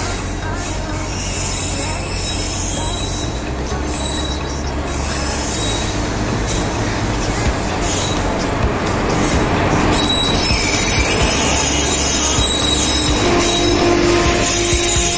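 Electric-hauled passenger train arriving at a station platform, its wheels rumbling and squealing on the rails as it slows past close by; a steady hum from the locomotive joins near the end as it draws alongside.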